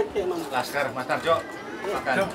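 Indistinct speech: several people chatting over one another, with no clear words.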